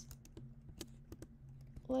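Computer keyboard being typed on: an irregular run of light key clicks, about a dozen keystrokes.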